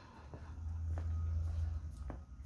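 Faint footsteps on a tiled floor over a low rumble, with a few soft taps.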